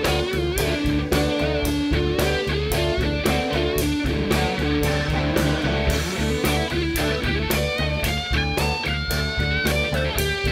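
Live soul-funk band in an instrumental passage: a lead electric guitar plays over bass and a steady drum beat, with high held, bending notes near the end.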